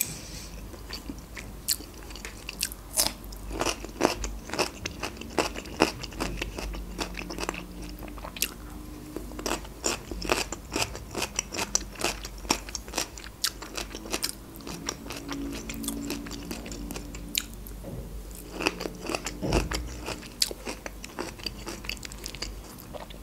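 Close-miked chewing of a mouthful of meat-stuffed bell pepper: many short, irregular wet clicks and smacks of the mouth and teeth.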